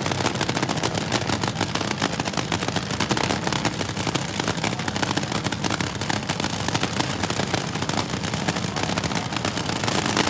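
Supercharged nitromethane top fuel dragster engine idling staged at the starting line, a fast, continuous crackle of sharp pops heard through the car's onboard camera microphone.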